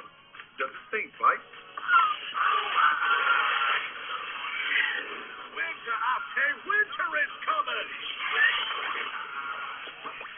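Film soundtrack playing from a television: background music with cartoon character voices over it, dull-sounding with the high end cut off.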